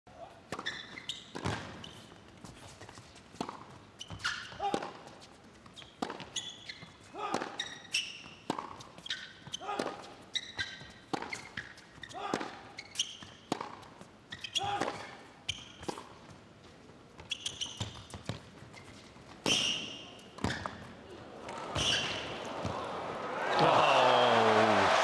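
Tennis rally on an indoor hard court: racket strikes on the ball about once a second, with short high shoe squeaks between them. Near the end the crowd's cheering and applause swell as the point is won.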